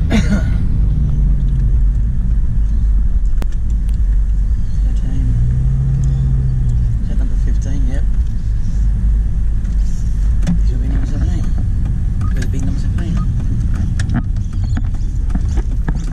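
Inside a car's cabin while driving slowly on a suburban street: a steady low rumble of engine and road noise, with a brief low hum about five seconds in.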